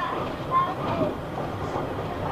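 Steady running noise heard inside a moving British Rail Mark 1 passenger coach: the carriage's wheels rolling on the rails.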